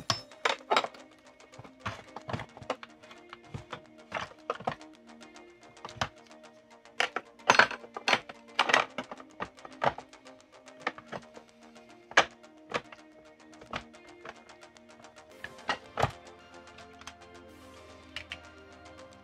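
Irregular clicks and knocks of plastic vacuum housing parts being handled and fitted together during reassembly of a Riccar Brilliance upright, over steady background music. The sharpest knocks come about seven to nine seconds in.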